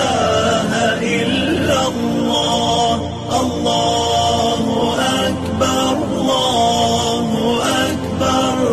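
An Eid nasheed: a voice chanting in Arabic, with gliding, ornamented melody lines, over music.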